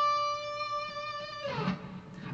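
Electric guitar holding a single sustained note that rings steadily, then fades and stops about one and a half seconds in.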